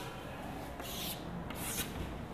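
Two short scraping strokes on a chalkboard, one about a second in and one near the end: chalk or a duster rubbed across the board.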